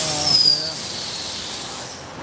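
Loud hiss of compressed air vented from a train standing at the platform, typical of an air brake release, with a faint falling whistle inside it; the hiss fades away near the end.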